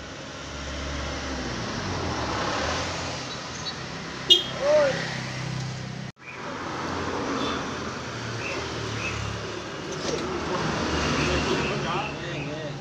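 Street sound of a motor vehicle engine running steadily, with road traffic and indistinct voices. There is a sharp click about four seconds in and a brief break in the sound about six seconds in.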